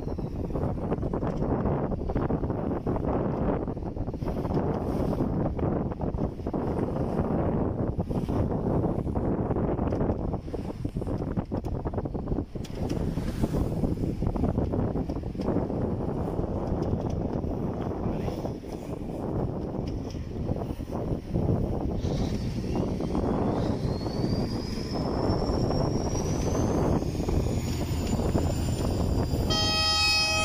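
A fishing boat's engine running under way, with wind and rushing water. Late on, a thin whine rises in pitch over several seconds, and at the very end a short horn blast sounds.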